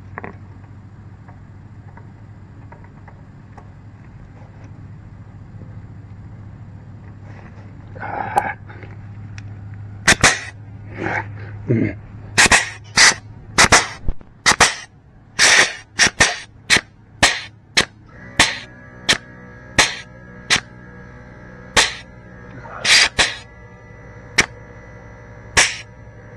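Pneumatic air-operated grease gun firing in short, sharp bursts, about one or two a second, as the trigger is worked repeatedly against a grease fitting; the gun is cycling without delivering grease, and its cartridge is found to be empty. A low steady hum sits under the first half and stops about twelve seconds in.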